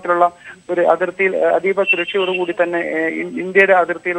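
A man speaking Malayalam over a phone line, the narrow sound of a telephone report in a news broadcast.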